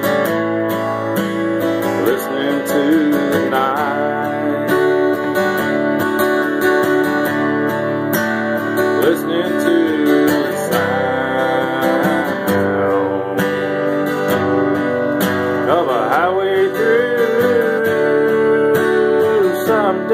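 Acoustic guitar strummed and picked steadily, a country-style instrumental passage between verses. A voice joins in twice without clear words, once around the middle and again near the end.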